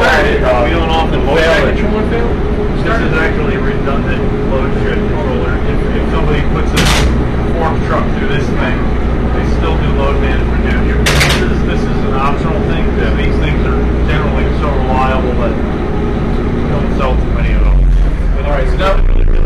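Generac generator sets running steadily, a low drone with a constant tone under background chatter. Two sharp clicks sound about seven and eleven seconds in.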